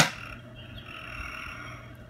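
A single sharp plastic click as a piece of the Dino Meal toy game snaps down, then faint handling sounds.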